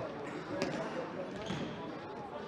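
Indoor soccer ball struck on the hard floor of a sports hall, two sharp hits about a second apart, under continuous voices of players and spectators.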